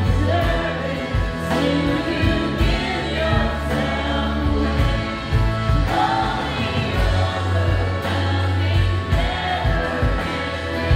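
Live worship band playing a song: women singing the melody together over acoustic guitar, drums and steady low bass notes.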